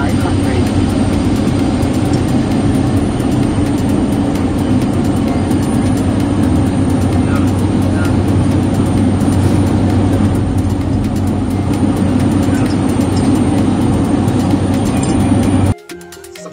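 Helicopter in flight heard from inside the cabin: a loud, steady engine-and-rotor noise with a low hum. It cuts off abruptly near the end.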